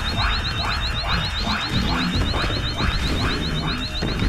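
Synthesized sci-fi energy sound: a rapid train of short rising chirps, about seven a second, over a pulsing electronic warble that rises about four times a second, with a low rumble underneath.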